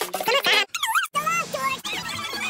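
Choppy montage of cartoon audio: music and high, squeaky, warbling sounds, broken by abrupt cuts about a third of the way in and again just past halfway.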